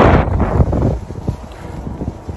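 Wind buffeting a phone's microphone outdoors: a rough, low rumble, loudest in the first second and then easing off.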